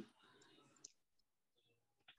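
Near silence: room tone, with one faint click just under a second in.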